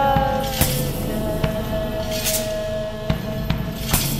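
Klezmer band music in an instrumental passage without singing: a long held melody note over a steady percussion beat, with a hit about every 0.8 seconds.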